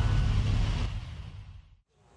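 Deep rumbling sound effect from a television bumper, a giant stone ball crashing through the ground, fading away to silence shortly before the end.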